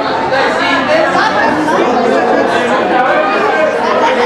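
Indistinct chatter of many people talking at once around dining tables, with voices overlapping at a steady level and no single speaker standing out.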